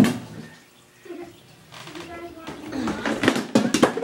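A quick run of clicks, knocks and clatter from household items being handled and moved about while the handheld phone is jostled.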